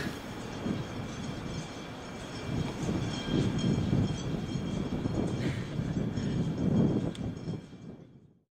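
Low, uneven outdoor background rumble that swells in the middle and fades out at the end.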